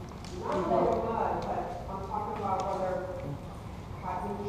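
Indistinct, echoing speech from people across a large room, with a few light clicks.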